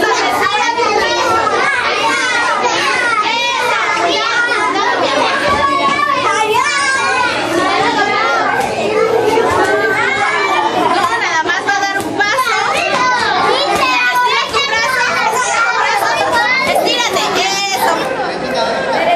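Many children shouting and chattering at play, their voices overlapping so that no single voice stands out.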